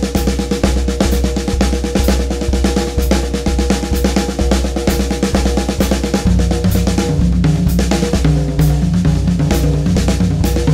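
Drum kit played in rapid sixteenth notes around the snare and tom-toms over a steady bass drum pulse. The sticking is the single-plus-double pattern with an extra double added, so the hands keep swapping roles and the accents fall off the beat. About six seconds in, the strokes move down to the lower-pitched toms.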